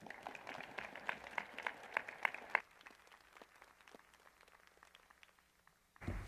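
A small audience of graduates applauding in a large, mostly empty auditorium. The clapping is fairly full for about two and a half seconds, then thins to scattered claps and dies away near the end.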